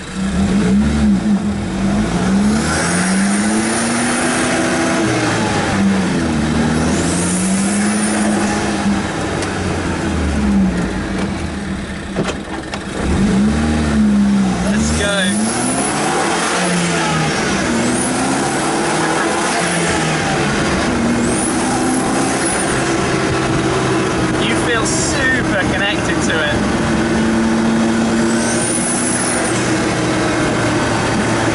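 Turbocharged 2.0-litre Ford EcoBoost four-cylinder engine of a Zenos E10 S under acceleration through the gears, its pitch climbing with the revs and falling back at each gear change. High turbo whistles and the wastegate noise come and go on and off the throttle, heard from the open cockpit.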